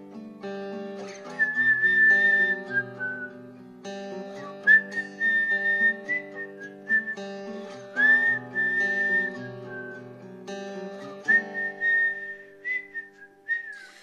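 Guitar picking a chord accompaniment while a whistled melody plays over it in four phrases of long held notes joined by short slides.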